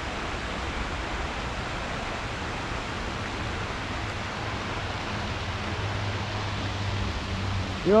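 Steady, even outdoor noise hiss with no distinct events, and a faint low hum in the second half.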